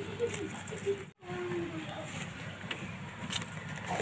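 Quiet outdoor background: a low steady hum with faint distant voices, broken by a brief moment of total silence about a second in.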